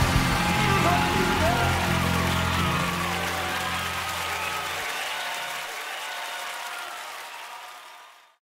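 The end of a live gospel recording: the band's closing notes under a congregation applauding and calling out. The bass stops about five seconds in, and the applause fades out to silence near the end.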